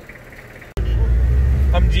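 A jeep's engine and road rumble heard from inside its cabin, a loud, steady deep rumble as the jeep drives off. It starts abruptly about three-quarters of a second in, after a short stretch of quiet background.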